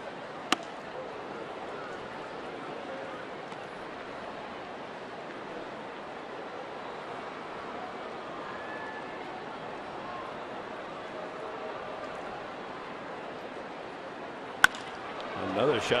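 Ballpark crowd murmur throughout. About half a second in, a sharp pop of a fastball landing in the catcher's mitt. Near the end, the crack of a bat squaring up a line drive, and the crowd rises.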